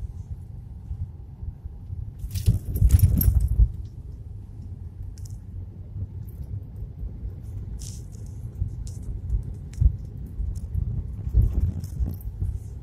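Cabin noise of a Suzuki Swift hatchback driving slowly over a rough, stony mountain road: a steady low rumble of road and engine, with a louder clattering jolt lasting about a second and a half near the start and a few scattered sharp knocks and rattles after it.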